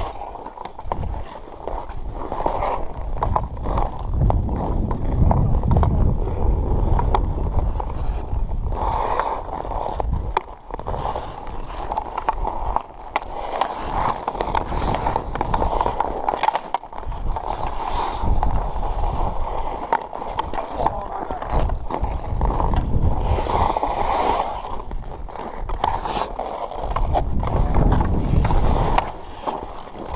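Ice skate blades scraping and carving on outdoor rink ice, with the sharp clacks of hockey sticks on a puck scattered throughout. A heavy low rumble of moving air on the microphone runs under it.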